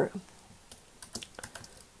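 Typing on a computer keyboard: a soft, uneven run of key clicks starting about half a second in.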